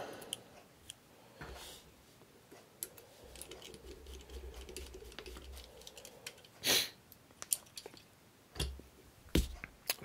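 Faint small clicks and taps of handling a 1/64-scale diecast truck while a tiny screw is driven with a magnetic screwdriver to fit its hitch, with a soft scraping in the middle stretch and two sharper clicks in the later part.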